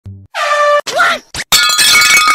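A loud, steady air-horn blast about a third of a second in, followed by a short sliding tone and, from about halfway, a loud harsh crash.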